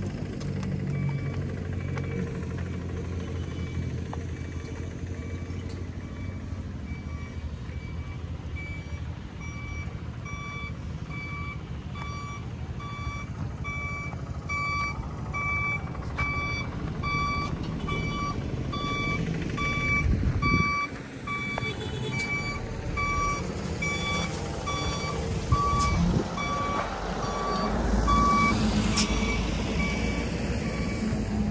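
Dump truck's reversing alarm beeping steadily, about one and a half beeps a second, over the truck's engine running low underneath.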